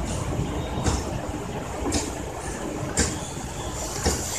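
Sharp metallic clicks about once a second, from a copper toe ring being shaped by hand, over a steady low background rumble.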